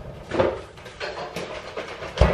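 Refrigerator door opened and a carton of oat milk taken out: a few short knocks and rustles, the loudest about half a second in.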